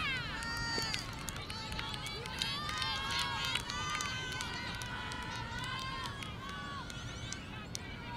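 Women's voices shouting and calling across an ultimate frisbee field, several high calls overlapping with no clear words, over a steady low background rumble.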